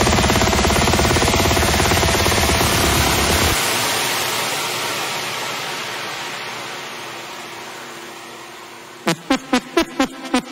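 Big room techno track in a breakdown: the fast-pulsing bass section cuts out about three and a half seconds in, leaving a white-noise sweep that slowly fades away. About a second before the end, hard kick drums hit several times in quick succession, about four a second.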